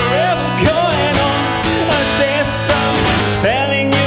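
Live solo song: a man's voice singing in long, gliding notes over a strummed acoustic guitar.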